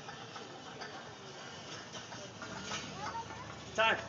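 A prowler sled loaded with 380 lb of bumper plates being pushed across asphalt, its runners scraping steadily with scattered footfalls and knocks. A loud shout of "Time" comes near the end.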